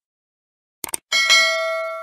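Subscribe-button animation sound effect: a quick double click just before a second in, then a bell chime struck twice that rings on with several clear tones and fades away.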